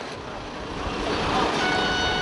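A passenger train passing on the track, its rushing rumble growing louder. About one and a half seconds in, a steady high-pitched tone begins and holds.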